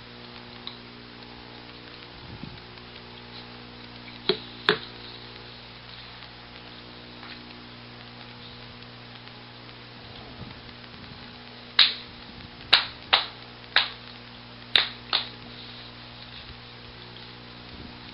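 Steady electrical mains hum with a few short, sharp clicks: two about four seconds in, then six more in a loose run between about 12 and 15 seconds.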